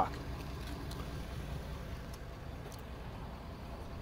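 Faint, steady low rumble of vehicle noise, like an engine running at idle somewhere near the microphone.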